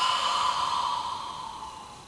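A man's long, hissing out-breath pushed through the teeth with the tongue placed between them, the exhalation of a meditation breathing technique. It starts strongly and fades away over about two seconds.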